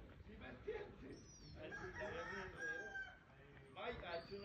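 A rooster crowing once, about a second and a half long, ending on a held note.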